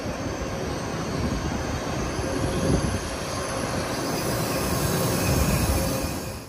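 CRH3C high-speed train pulling in along the platform: a steady rush of running and wheel noise with a faint steady whine, growing a little louder toward the end.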